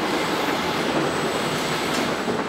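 Steady, even rushing noise of automated warehouse machinery running.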